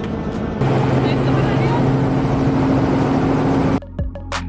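Helicopter running, heard inside the cabin: a loud, steady noise with a low, even hum under it. It cuts off abruptly just before the end.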